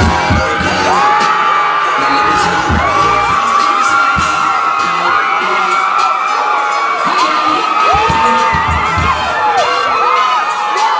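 A large concert crowd cheering and screaming loudly and continuously, many high voices at once, with bass-heavy music dropping away in the first second.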